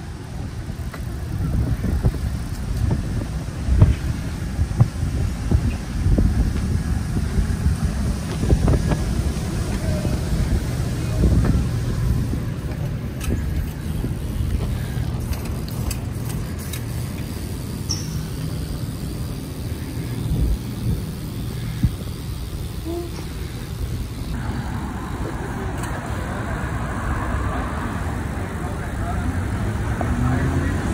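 Wind rumbling on the microphone and road noise while riding bicycles along a city street, with scattered knocks and bumps from the bikes; car traffic in the background.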